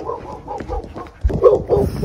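Dogs barking several times in short bursts, loudest about a second and a half in.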